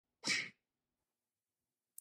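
A single short, sneeze-like burst of breath noise, about a third of a second long, near the start.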